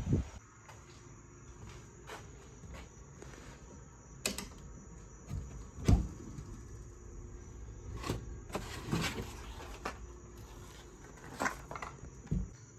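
Handling of a glass-fronted wooden cabinet door with a key in its lock: a handful of short, sharp clicks and knocks, the loudest about six seconds in.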